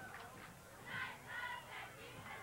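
Faint, distant shouting voices from the football field or stands, with two short shouts about a second in.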